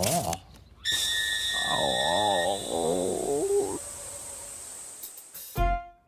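Animated-cartoon soundtrack of music and sound effects: a brief rising cry at the start, then a high held tone with a wavering, warbling pitched sound for a couple of seconds, and a sudden low thud with a new musical phrase near the end.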